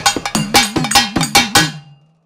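Closing percussion of a Tamil devotional (Amman varnippu-style) song: a quick run of about eight sharp strikes, each with a drum tone that bends in pitch. The strikes die away near the end and the music stops.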